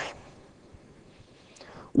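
A pause in a man's speech: his last word dies away at the start, then quiet room tone, with a faint breath just before he speaks again at the very end.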